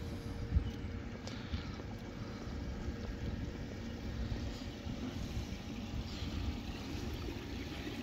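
Steady low rumble of outdoor background noise, with a faint steady hum for the first two seconds and a single click about half a second in.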